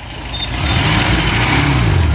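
Car engine running and growing louder as the car comes close, its pitch rising and falling.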